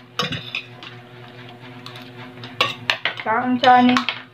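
Eating utensils clinking against a plate, with a few sharp clicks about a quarter second in and again a little before the end.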